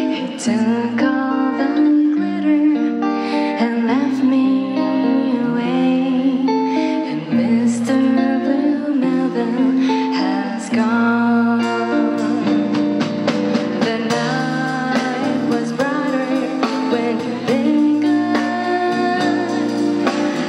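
A live band playing a gentle pop song, with guitar and a steady bass line under a woman's lead vocal.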